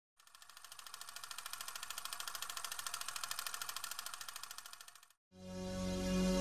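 A fast, even mechanical rattle used as a sound effect. It fades in, holds for about five seconds and fades out. Near the end, music starts with a low, steady drone.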